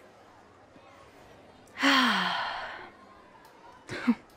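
A woman's long, breathy sigh about two seconds in, her voice falling in pitch as it fades out over about a second. A brief sharp breath comes right at the end.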